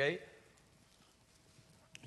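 A man's voice saying "Okay?", then near silence: room tone, with one faint click just before he speaks again.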